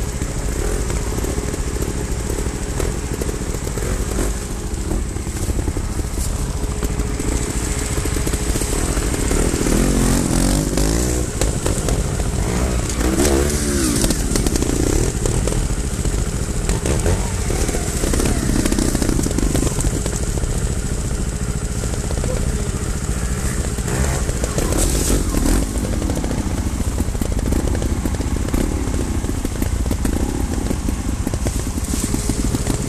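Trials motorcycle engines: a steady nearby engine throb, with bikes climbing a rocky trail whose revs rise and fall several times as the riders work the throttle over rocks and logs.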